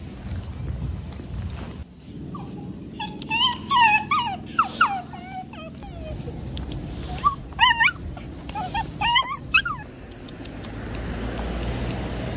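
A small dog whining and whimpering in high, wavering cries that rise and fall in pitch, in two bouts: one about three seconds in and another around eight seconds. A low outdoor rumble runs underneath.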